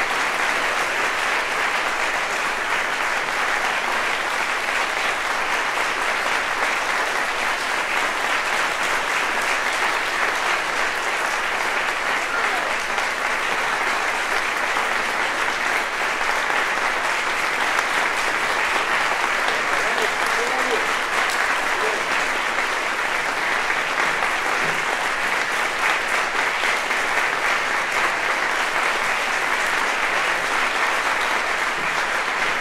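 Concert audience applauding, steady and unbroken, with a voice briefly heard above it about twenty seconds in.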